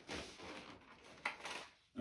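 Soft handling noise as items are taken from an open cardboard box of tennis string reels and packets: faint rustling and rubbing with one sharp knock about a second and a quarter in.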